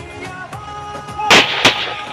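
Ceremonial rifle salute fired by a military firing party: two sharp, loud shots about a third of a second apart, over background music.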